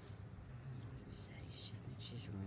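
Faint, breathy voice sounds close to the microphone, with a short hiss about a second in.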